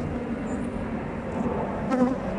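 Steady hum of honeybees around an open hive, from a queenless colony whose frame is held up for inspection, with a short knock near the end.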